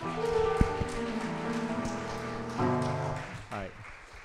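Grand piano playing held chords, a new chord coming in about two and a half seconds in, with a single sharp tap about half a second in.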